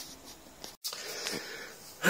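Faint handling rustle and breathing close to the microphone, broken by a brief dropout a little under a second in.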